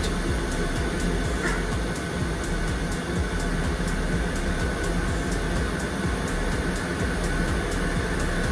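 Boeing 757 auxiliary power unit (APU) running steadily on the ground: a constant rushing drone with a faint steady whine, its bleed air keeping the pneumatic system pressurised and the equipment cooling fans running.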